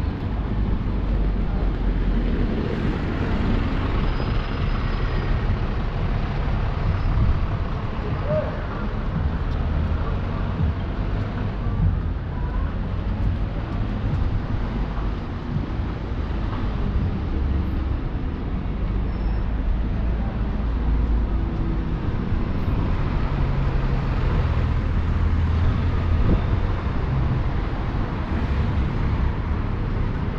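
Busy street ambience: steady road traffic of cars and buses, swelling louder twice as vehicles pass close by, with faint voices of passers-by.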